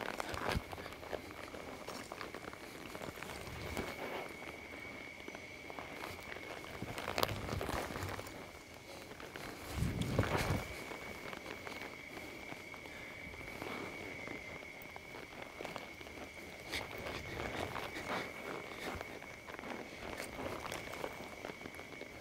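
Cutting horse's hooves thudding and scuffing in soft arena dirt as it stops, turns and moves with a calf, in irregular steps. A louder, deeper thud comes about ten seconds in, and a steady high-pitched hum sits underneath.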